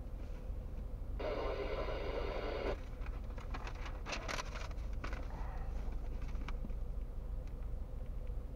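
Car engine idling, heard from inside the cabin as a steady low rumble. About a second in, a loud steady pitched tone sounds for about a second and a half and cuts off sharply, followed by a run of light clicks.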